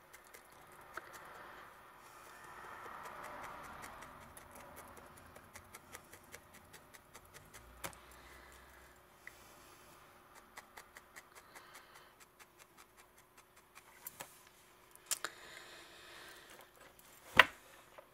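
Felting needle jabbing repeatedly into loose wool on a needle-felted body, faint soft ticks at about four a second after a short rustle of wool, with a couple of louder knocks near the end.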